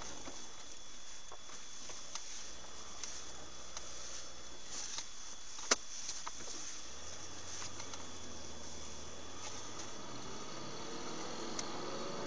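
Dashcam recording from inside a vehicle: steady hiss with a thin, high, unchanging electronic whine and a low engine hum that comes and goes. A single sharp click a little before halfway.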